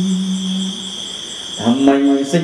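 A young male Buddhist novice's unaccompanied voice in Khmer smot chanting: a long held note ends about three quarters of a second in, and after a short breath pause a new note slides upward and is held near the end. A steady high, thin insect-like tone runs underneath and stands out in the pause.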